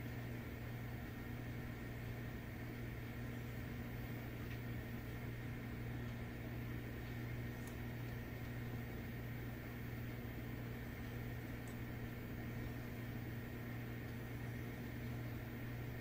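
Steady low hum and whir of a Dell Precision desktop workstation's cooling fans, running evenly while the machine boots.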